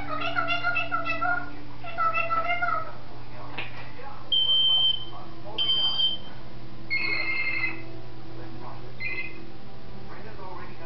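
African grey parrot vocalizing: two drawn-out calls in the first three seconds, then a run of short, high, pure whistles, the loudest about four seconds in.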